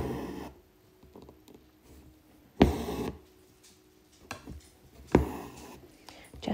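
Embroidery thread drawn through fabric stretched in a wooden hoop, three times, about two and a half seconds apart: each pull a short rasp that starts sharply and trails off within about half a second, with faint small ticks of the needle between.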